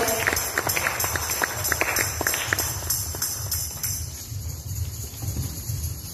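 Audience clapping, the claps thinning out and dying away about four seconds in.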